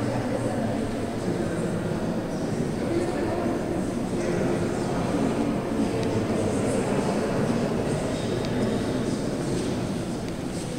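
Steady murmur of many overlapping voices, with no single word standing out.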